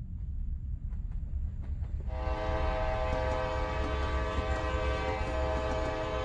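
Locomotive rumbling, then its air horn sounding about two seconds in and held as one long steady blast.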